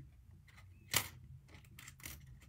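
Thin steel cutting dies clicking as they are handled and shifted in their storage packet: one sharper click about a second in and a few lighter clicks near the end.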